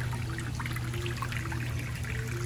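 Water trickling and splashing in a terrapin tank, in small irregular drips, over a steady low hum.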